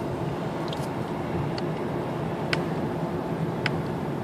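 Cabin noise of a VW Golf 7 1.6 TDI diesel driving at about 2,000 rpm: a steady engine hum with road noise, and a few faint short ticks.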